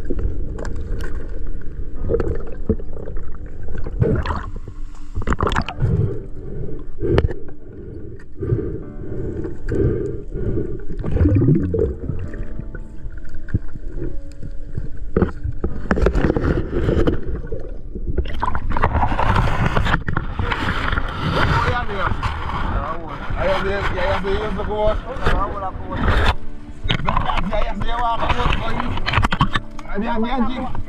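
Muffled underwater sound from a submerged camera: low bubbling with knocks and scrapes as it pushes through reeds. In the second half, wavering voice-like sounds come through muffled.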